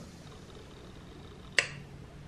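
Faint room tone, then about one and a half seconds in a single short, sharp smack of lips as a kiss lands.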